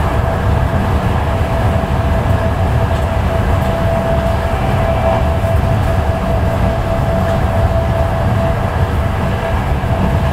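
Running noise of a Mark IV passenger coach at speed, heard inside the vestibule by the gangway: a loud, steady rumble with a steady whine over it.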